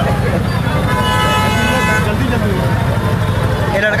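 A vehicle horn sounds for about a second, a steady multi-note blare, over a continuous low rumble from the moving vehicle.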